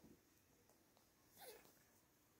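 Near silence, with one faint, short, falling squeak from a kitten about one and a half seconds in.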